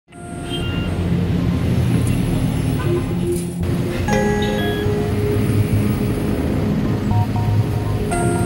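Background music of short held notes at changing pitches over a heavy, steady low bass.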